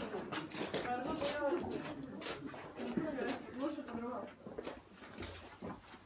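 Speech: several young voices talking over one another, with no clear words.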